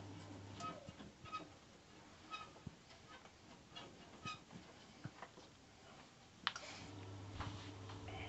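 Faint scattered clicks and light taps from the Ferroli gas boiler's control panel and casing being handled. About six and a half seconds in comes a sharper click, and after it a steady low electrical hum starts as the boiler powers up to run its self-test.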